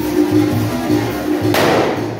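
Live band music with a steady beat. About a second and a half in, a loud hissing burst of fireworks cuts across it.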